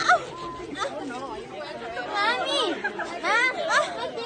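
Indistinct chatter: several voices talking and calling out, some high-pitched and rising, louder about two and three and a half seconds in.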